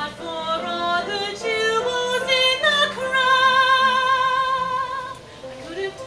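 A woman singing a show tune: a run of quick, changing notes, then one long high note with vibrato held for about two seconds, and a rising slide into the next phrase near the end.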